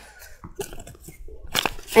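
Faint rustling of folded paper with a few small clicks as a rubber band is worked onto one side of it.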